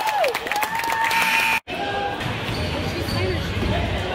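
Basketball bouncing on a hardwood gym floor with sneakers squeaking during play, cut off abruptly about one and a half seconds in; afterwards a steady murmur of spectators' voices echoing in the gym.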